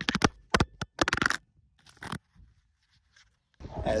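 Handling noise from a dropped iPhone being picked up: a quick run of knocks and scrapes against the phone's microphone in the first second or so, then near silence for about two seconds.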